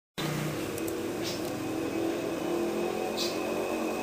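Steady hiss with faint low tones beneath it.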